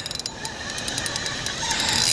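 Spinning reel clicking rapidly, a fast run of fine ratchet clicks, while a hooked fish is being played on the rod.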